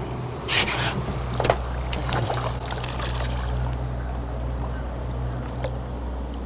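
Steady low hum of an idling boat motor, with a short splash of a hooked trout thrashing at the surface about half a second in and a few light clicks.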